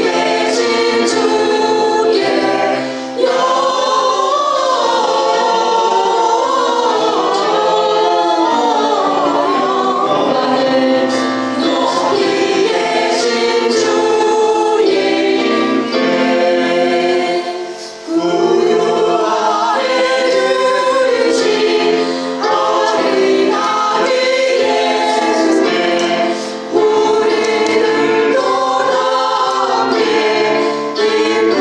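A small women's vocal ensemble singing a Korean Christmas carol in harmony into microphones, with brief pauses between phrases.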